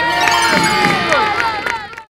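A group of young children cheering and shrieking together, many high voices overlapping.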